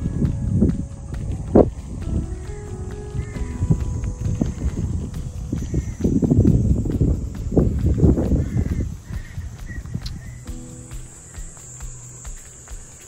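Gusty wind rumbling on the microphone in uneven bursts, with background music of held notes playing under it. The wind drops about nine seconds in, leaving the music.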